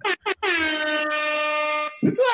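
A single long horn blast, like an air horn sound effect: one steady blaring tone lasting about a second and a half, its pitch dipping slightly at the start and then holding flat until it cuts off abruptly. It is preceded by a couple of short clicks.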